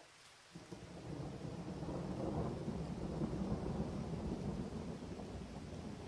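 A low rumbling noise that starts about half a second in, swells over the next second or so and then holds steady.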